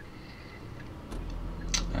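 Car cabin noise while driving: a low engine and road rumble that grows stronger about a second in, with a short click near the end.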